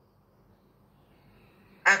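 Near silence with faint hiss, then a man's speaking voice starts abruptly near the end.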